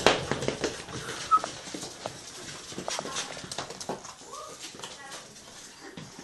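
Small white dog moving around on a wooden floor, its claws clicking, with a couple of brief whines.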